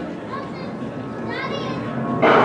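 Spectator chatter with two short high-pitched calls from children's voices, the second about a second and a half in.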